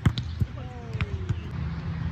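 Volleyball smacked by a player's hand at the net, one sharp hit right at the start, followed by a few lighter knocks.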